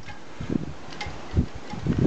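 Steady outdoor hiss with a few dull low thumps, the loudest about one and a half seconds in.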